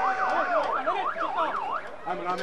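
Emergency-vehicle siren in a fast rising-and-falling yelp, several sweeps a second, holding a steady tone briefly near the start.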